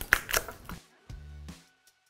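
A few quick knife chops on a cutting board, mincing garlic, in the first second. A short low note of background music follows, and then the sound cuts out.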